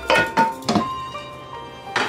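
Background music, with a utensil scraping and knocking rice out of a frying pan into a rice cooker's inner pot: four quick strokes in the first second.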